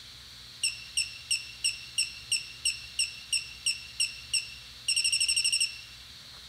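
Electronic beeper sounding single high beeps about three times a second during the gimbal controller's accelerometer calibration, then a quick run of about a dozen rapid beeps that ends it.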